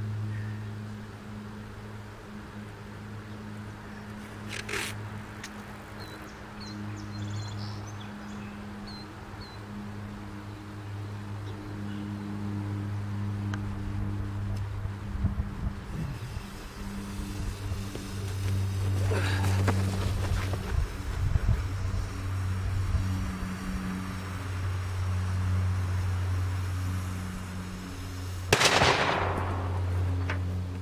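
Outdoor quiet with a steady low hum, then about 28 seconds in a single sharp blast with a short tail: a small HMTD detonator cap firing under a pressed nitrocellulose puck that does not detonate.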